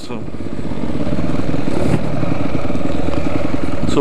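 Dirt bike engine running under throttle while riding along a dirt trail. Its sound dips briefly at the start, then builds over about a second and holds steady.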